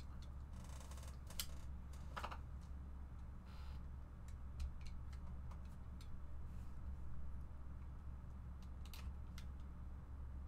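Scattered light clicks and a few brief rustles of handling at a desk, over a steady low electrical hum.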